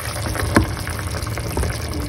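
Curry sauce simmering in a pan, bubbling and popping steadily, with one sharper click about half a second in.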